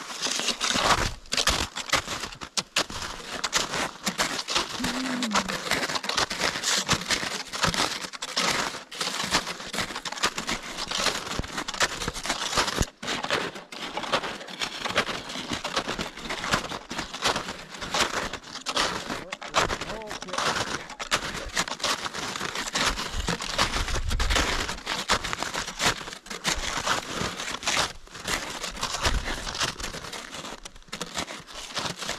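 Snowshoes crunching and crackling through packed snow with each step, an irregular run of crisp crunches that goes on throughout.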